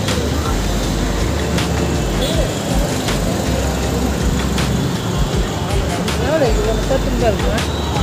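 Indistinct voices of a family group at close range over a steady low rumble, with occasional knocks from handling the phone.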